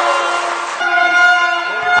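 Noisy crowd sound in the gym, cut off abruptly about a second in by a steady, held horn-like tone that carries on.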